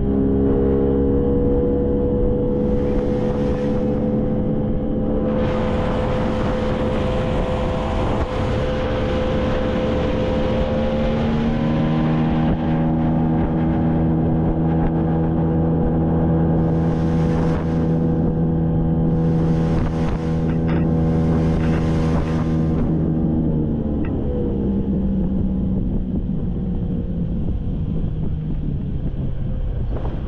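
A small boat's motor running as the boat travels, its pitch shifting about eleven seconds in and falling away near the end, with a rushing hiss of wind and water at times.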